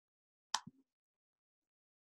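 A computer mouse click about half a second in, a sharp tick followed at once by a softer one, advancing a slideshow.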